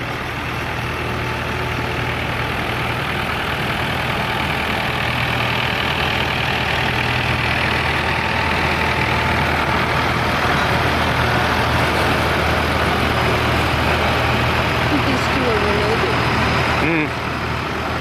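Farm tractors driving past one after another, their engines running with a steady low drone. The sound grows louder as the nearer tractors pass and drops about a second before the end.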